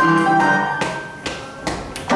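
Boogie-woogie piano playing. About a second in, the dense rhythm thins out into a quieter lull with a few scattered notes.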